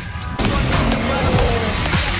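Film soundtrack heard in a cinema auditorium: a score plays, and about half a second in a sudden loud rush of wind-like noise comes in with low rumbling under it, the sound of a desert sandstorm on screen.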